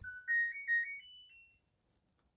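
LG clothes dryer's control panel playing its electronic chime as it is switched on to start a load: a short tune of several beeping notes stepping upward, lasting about a second and a half.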